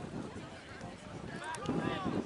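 Voices shouting and calling out, with one high-pitched call near the end, over steady outdoor noise.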